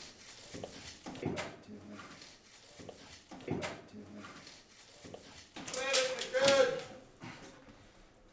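A man grunting with effort, in short strained bursts about once a second, then a louder, longer straining groan near the end, as he levers a refrigerator up with a wooden board.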